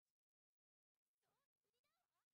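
Near silence, with very faint wavering pitched sounds in the second half.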